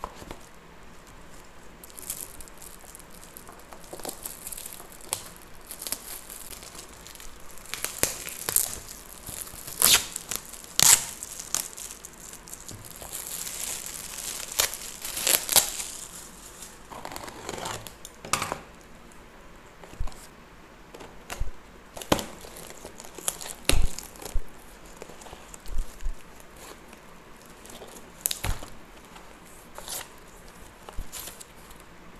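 Shiny gift-wrap paper crinkling and tearing as a present is unwrapped by hand, in irregular bursts with a longer stretch of rustling about halfway through. In the second half, a cardboard box is handled and opened, with a few sharp knocks.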